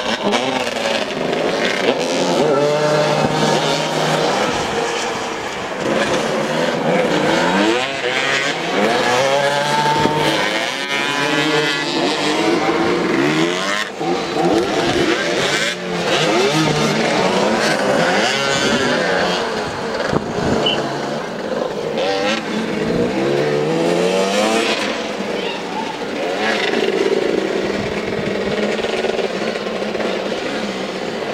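Several motoball motorcycles revving and running at once, their engines rising and falling in pitch as the riders accelerate and slow around the pitch.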